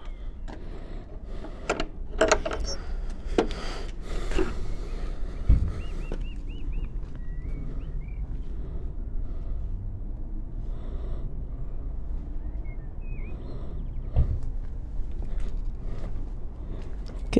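Clicks and knocks from a wooden garden gate with a sliding bolt being opened and passed through, then two low thumps while walking on paving, over a steady low wind rumble on the microphone. A few short bird chirps around the middle.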